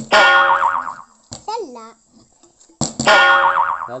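Cartoon 'boing' sound effect played twice, about three seconds apart, each a sudden wobbling twang that fades away over about a second. A short voice is heard between the two.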